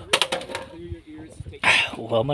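A man's voice in short, broken sounds, with a loud breathy burst near the end like the start of a laugh, and a few clicks and knocks from the handheld phone being moved.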